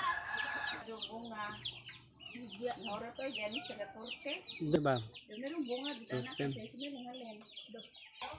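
Chickens clucking, over continual rapid high-pitched chirps that fall in pitch, with one louder call about five seconds in.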